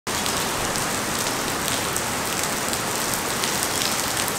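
Heavy rain falling on a puddled yard, a steady hiss with scattered drop ticks.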